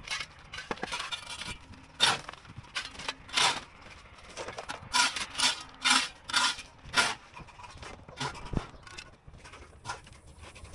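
Shovel scraping and scooping through gravel and rubble: about ten short, irregular scrapes, the loudest in the middle.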